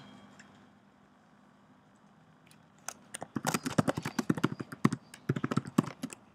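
Computer keyboard typing: after a few seconds of quiet room tone, a quick, irregular run of key clicks starts about halfway through and goes on to the end.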